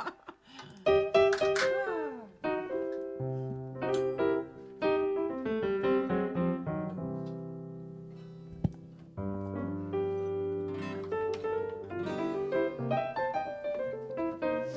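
Electric stage piano playing slow, sustained chords over a bass line, with a short pause about two-thirds of the way through before the chords resume. A brief laugh comes just before the playing starts.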